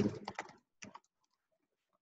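Typing on a computer keyboard: a few quick key clicks in the first second, then faint scattered taps. A voice trails off at the very start.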